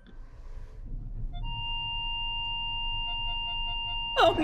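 A steady electronic tone starts about one and a half seconds in and holds, joined about a second later by a quick pulsing beep, about three pulses a second, over a low steady rumble.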